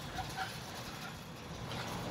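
Quiet, steady outdoor background hiss with a low, fluctuating rumble of wind on the microphone.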